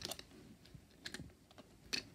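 Faint, scattered small clicks and light taps, a handful over two seconds, the sharpest just before the end.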